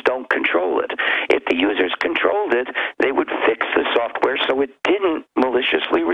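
A man talking continuously, his voice thin and narrow as over a telephone line.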